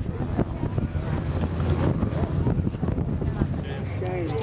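B-17 Flying Fortress's four Wright Cyclone radial engines running with a steady low drone as the bomber rolls away down the runway, with wind buffeting the microphone.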